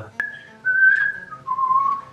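A person whistling a short falling phrase of three held notes, each lower than the last. A sharp click sounds just before the first note.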